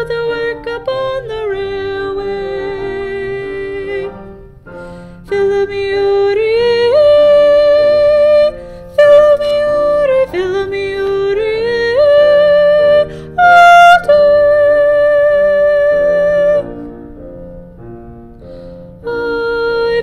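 A soprano voice singing the second-soprano line of a choral arrangement on long held notes without words, sliding between pitches, with other parts sounding beneath. It drops quieter about four seconds in and again near the end.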